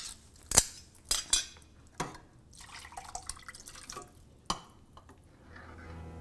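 Kitchen clatter: a handful of sharp, irregular clinks and knocks of a cooking utensil against cookware on the stove, the loudest about half a second in.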